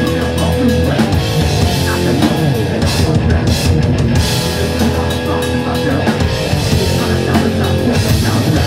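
Hardcore punk band playing live: distorted electric guitar and drum kit, loud and continuous.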